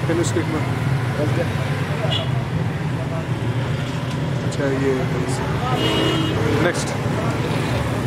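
Steady low rumble of road traffic, with faint voices in the background and a few light clicks.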